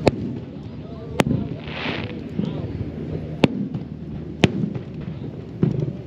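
Aerial firework shells bursting: four sharp bangs spaced one to two seconds apart, with a short hiss about two seconds in. A crowd is talking underneath.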